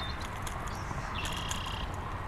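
Bird calls over a steady outdoor background: a thin high note sliding down at the start, then a short buzzy trill about a second in.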